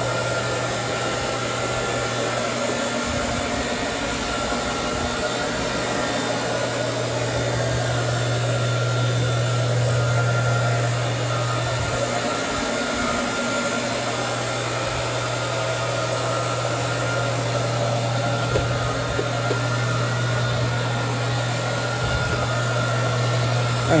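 Rotary floor machine running, its rayon-blend cleaning pad spinning on low-pile carpet: a steady motor hum with a low drone that dips briefly about halfway through.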